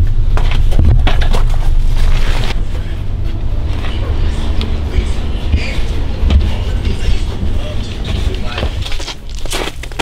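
Handling noise from a plastic bucket being lifted by its wire handle and carried: a low rumble with scattered knocks and rustles, heaviest in the first few seconds and easing off later.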